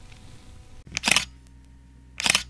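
A camera shutter sound effect: one sharp double click about a second in, over a faint steady hum.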